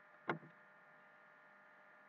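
Near silence: faint room tone with a light steady hum, broken once about a third of a second in by a single short click-like sound.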